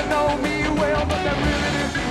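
A live hard rock band plays loudly: electric guitar, electric bass and drums, with a male singer's high, sliding vocal line over them.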